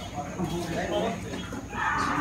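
Indistinct voices of people in a room, with a louder vocal burst near the end.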